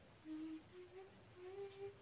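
A woman humming a short tune softly with closed lips: three or four held notes, the last one sliding slightly upward.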